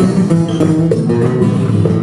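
Live guitar accompaniment to a bluesy country-rock song, a steady plucked and strummed groove played in the gap between two sung lines.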